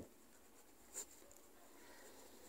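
Near silence with faint writing: a light tap about a second in, then faint scratching of a pen on paper.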